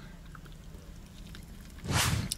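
Quiet chewing of a mouthful of burger over a low steady hum. A short noisy swell comes just before the end.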